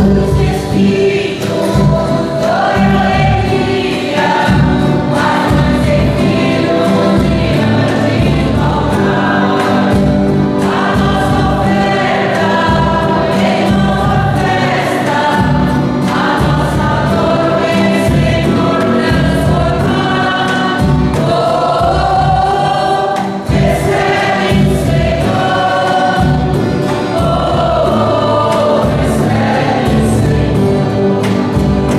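A church music group and congregation singing a hymn together, with acoustic guitars and an accordion playing under the voices, the offertory hymn of a Catholic Mass.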